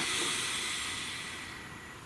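A person's long, deep breath out: an even, breathy hiss that fades away over about two seconds.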